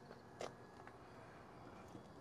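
Near silence: faint outdoor background hiss, with one short faint click about half a second in.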